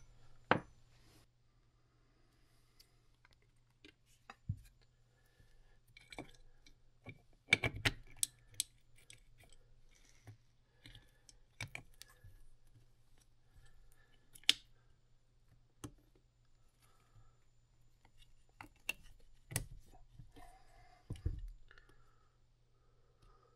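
Scattered light metallic clicks and taps as steel engine parts (gears, a shaft, small pieces) are handled and fitted into a Kawasaki KX250F's aluminium crankcase half, over a faint steady low hum.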